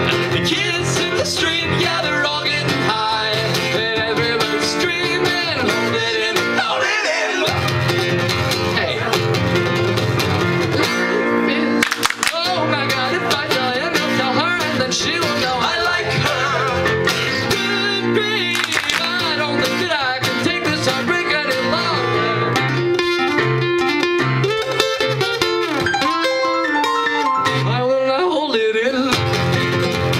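Live band music with guitar and a man singing.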